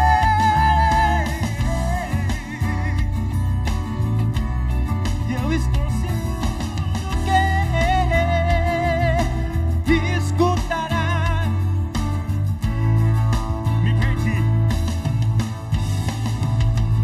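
A live acoustic band playing a song: acoustic guitar and accordion under a sung melody with vibrato, over a steady low beat.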